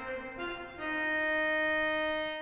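Pipe organ playing short chords that change twice, then a full chord held from just under a second in.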